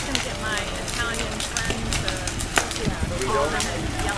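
A burning wood-sided house: crackling and popping over a steady rush of flame, with one sharper pop about two and a half seconds in.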